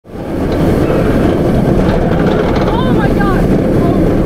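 Steady loud rush of wind and track rumble from the front row of a riding Bolliger & Mabillard inverted roller coaster, fading in at the very start, with a few short wavering high sounds around the middle.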